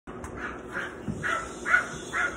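A small dog barking over and over in short barks, about two a second.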